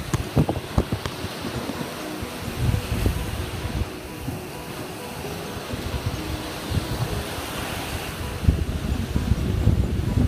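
Wind buffeting the phone's microphone in gusts over the steady wash of surf breaking on a sandy beach, with a few handling knocks in the first second.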